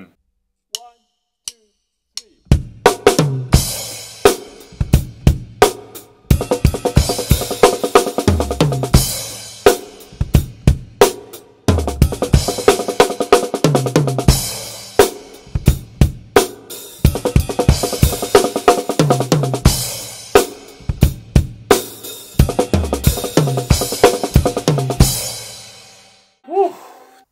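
Drum kit played: a groove alternating with one-bar fills of sixteenth-note triplets with accents, across snare, toms, bass drum and cymbals. The playing starts about two and a half seconds in, and the last stroke rings out near the end.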